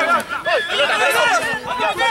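Several voices shouting and calling over one another without a break, during a rugby tackle and ruck.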